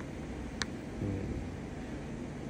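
Steady low background hum, with a single sharp click about half a second in.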